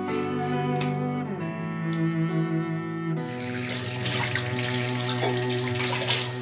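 Background music with low, held string notes; about three seconds in, a kitchen tap starts running, water pouring over a fish and into a stainless steel sink.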